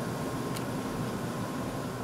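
Steady background hiss of workshop room tone with a faint steady hum, and a single light click about half a second in.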